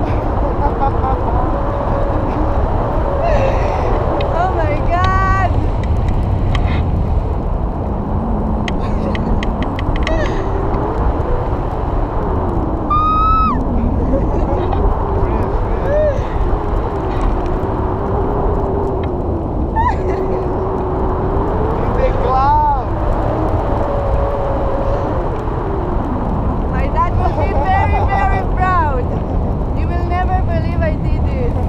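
Steady rush of wind buffeting the microphone of a hang glider in flight, with voices running through it and a few short rising cries.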